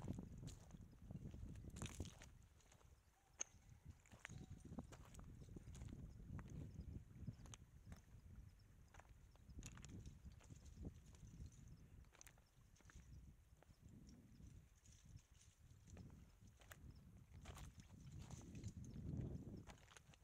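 Faint footsteps on loose stones and gravel: irregular clicks and crunches of shoes on scree, with a low rumble underneath.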